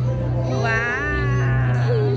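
Music with a steady low note, and a high wavering voice-like tone lasting about a second in the middle.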